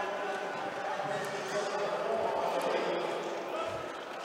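Roller derby skaters' wheels rolling and thudding on a sport court floor during a jam, under a steady murmur of crowd voices that echo in a large hall.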